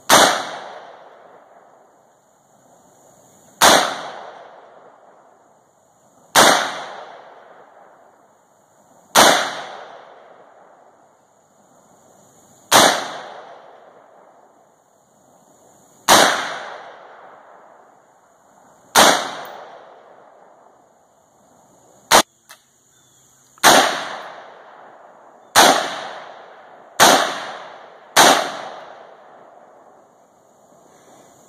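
About a dozen single shots from an AR-15-style rifle, fired slowly at first, roughly one every three seconds, each trailing off in an echo. The last few shots come faster, a little over a second apart.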